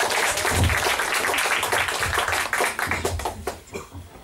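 Audience applauding, thinning out and dying away about three and a half seconds in.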